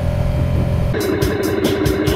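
Low, steady rumble of a motorcycle ride heard from a helmet-mounted camera, cut off about a second in by music with a quick, steady beat of about four a second.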